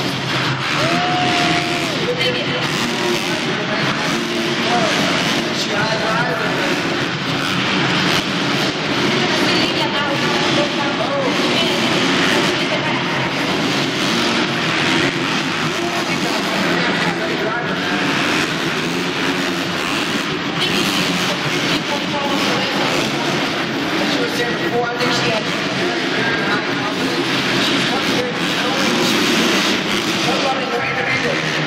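Motocross bikes racing around an indoor dirt track, their engines revving up and down, mixed with crowd noise and echoing announcer speech over the arena's PA.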